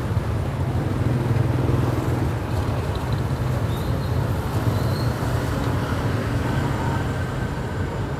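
Motor scooter traffic: a steady low engine drone with road noise as scooters ride slowly close by.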